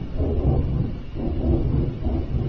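A loud, low rumbling roar of unknown origin that swells and eases about once a second, likened to "a giant flame".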